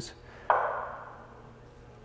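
A single metallic ping about half a second in, ringing and fading away over about a second.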